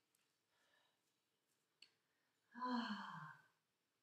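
A person sighing: one long out-breath about two and a half seconds in, its pitch falling as it trails off.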